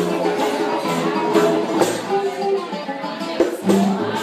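Live acoustic ensemble playing Middle Eastern-style Jewish music: a plucked oud melody over an upright double bass, with hand strikes on a metal goblet drum.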